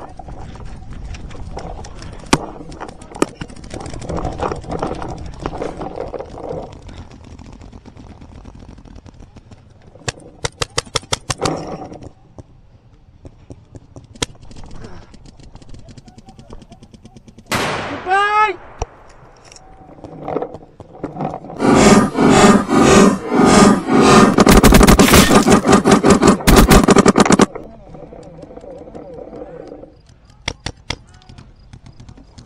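Paintball markers firing rapid strings of shots: a short string about ten seconds in and a long, much louder string close to the microphone in the last third.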